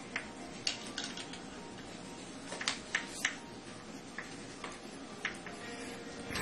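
Chalk tapping and scratching on a blackboard as structures are drawn: a dozen or so short, sharp, irregular ticks, bunched together about halfway through, over a steady low room hum.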